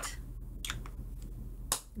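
A few short sharp clicks, the loudest near the end, from small plastic eyeshadow compacts being handled, over a steady low hum.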